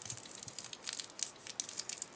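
Cellophane wrapping on a small gift-package ornament crinkling as a needle is pushed through it: a faint run of irregular crackles.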